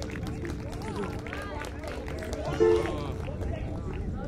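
Several people talking at once, with a steady low tone held underneath. A short, loud note sounds about two and a half seconds in.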